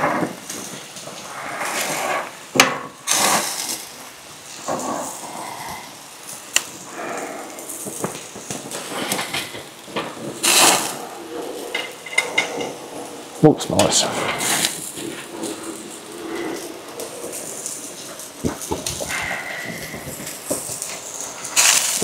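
Scattered clicks and knocks of barbecue utensils handling food on a grill, with voices talking at times.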